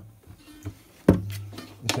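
Columbus 335-style electric guitar's strings sounding as the guitar is knocked while being handled: a sudden thud about a second in with a low note that rings on and fades, and a second sharp knock near the end.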